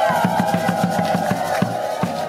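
Music: drums beating a fast, even rhythm, about six strokes a second, under a long held high note.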